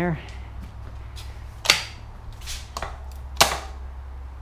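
Parts of a Sondors Step e-bike being handled and fitted back together: a few light clicks and two sharp knocks, the first a little before halfway and the second near the end.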